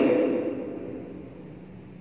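A pause in a man's amplified speech: the last word's echo fades away in a large hall over about a second, leaving faint steady room noise.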